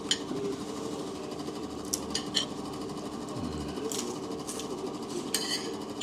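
Spoon or cutlery clinking against a plate a handful of times as the meal is eaten, over a steady low background hum.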